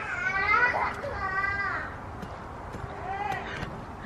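A young child's voice making wordless vocal sounds in short phrases, mostly in the first two seconds and once more about three seconds in.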